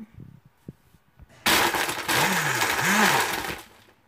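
Black & Decker countertop blender crushing ice in a frozen green apple daiquiri mix, starting about a second and a half in and running for about two seconds. Its motor pitch rises and falls twice as the ice churns, then it stops.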